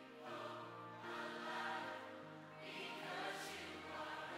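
Contemporary worship song: voices singing long held notes over sustained instrumental chords that change every second or so.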